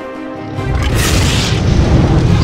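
Background music with a deep boom swelling in about half a second in, topped by a rushing hiss that peaks about a second in: a transition sound effect.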